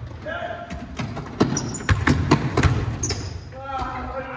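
A basketball bouncing several times on a hardwood gym floor, in the echo of a large hall, with players' voices calling out near the start and end.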